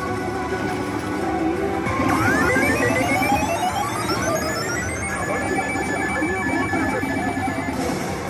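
Kabaneri pachislot machine playing its electronic music and effects: a rising sweep of tones starts about two seconds in, levels off into a held ringing tone, and cuts off near the end as the machine enters a bonus stage.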